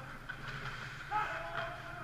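Ice hockey rink ambience: a steady low hum through the arena, with a brief distant shout a little over a second in.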